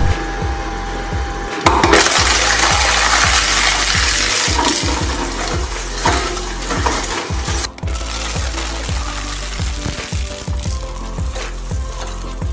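Twin-shaft industrial shredder's steel blades crunching and tearing plastic toy tubes: loudest from about two seconds in until nearly eight seconds, then a lighter grinding of the remaining shreds.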